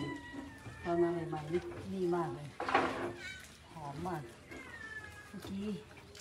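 Domestic cats meowing at feeding time: several short meows, one louder than the rest about three seconds in.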